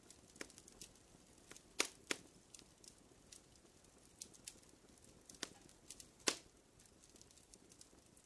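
Faint campfire crackling: irregular sharp pops and snaps over a low hiss, the loudest pops about two seconds in and again about six seconds in.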